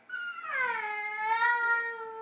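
An upset toddler's long, high wail: one held cry that dips slightly in pitch at the start and then stays level.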